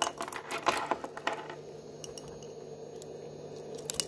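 Metal link watch band and its fold-over clasp clicking and clinking as fingers handle them: a quick run of small clicks in the first second and a half, then a few more near the end.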